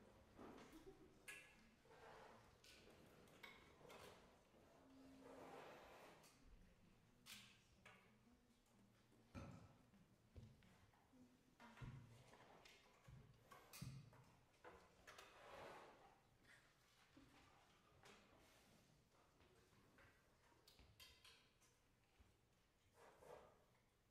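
Near silence in a concert hall, broken by scattered faint knocks, clicks and rustles of performers shifting about the stage and handling music stands.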